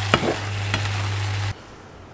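Napa cabbage and broccoli sizzling as they are stir-fried in a pan, with the spatula scraping and knocking against the pan twice, over a steady low hum. The sizzle cuts off suddenly about one and a half seconds in, leaving a quiet room.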